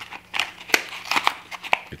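A stiff plastic blister pack being pried and torn open by hand: a series of sharp, irregular crackles and clicks.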